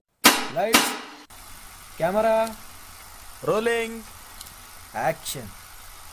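Four short voice-like calls, each a quick pitch swoop, about a second and a half apart. The first starts sharply about a quarter second in and is the loudest.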